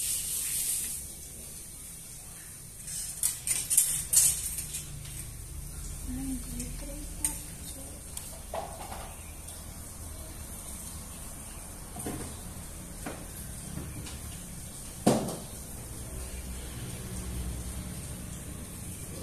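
Scattered light clicks and knocks, a quick cluster about three to four seconds in and a sharp single knock near fifteen seconds, from wire clothes hangers being handled on a metal drying rack.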